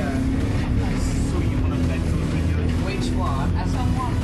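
A single-deck bus's drivetrain running steadily, heard from inside the passenger cabin as a continuous low hum with a steady tone above it, with voices talking over it.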